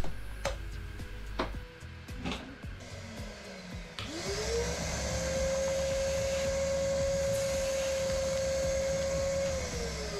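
Vacuum cleaner motor spinning up, rising in pitch about four seconds in, then running steadily as it sucks the air out of a filament vacuum storage bag through the bag's valve. It winds down just before the end. A few clicks of handling the bag and valve come before it.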